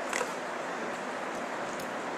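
Steady hiss of room and recording noise, with a marker squeaking and scratching on a whiteboard as lines are drawn. There is a short stroke just after the start and fainter strokes near the end.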